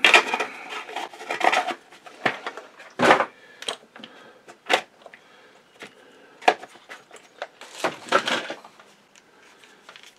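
Plastic cases of small rotary-tool points and hand tools picked up and set down: irregular clicks, knocks and rattles, busiest in the first two seconds and again about eight seconds in.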